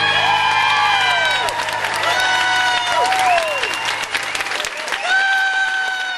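Audience applauding and cheering at the end of a piano song, with several voices calling out over the clapping while the last piano chord rings on and dies away about four and a half seconds in.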